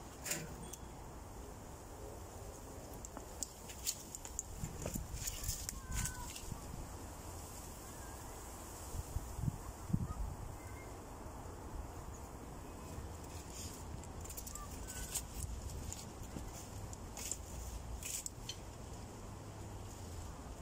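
Wind rumbling on the microphone, with scattered crackles, rustles and a few light knocks as cut sections of tree trunk are handled. A few faint, short bird chirps come through.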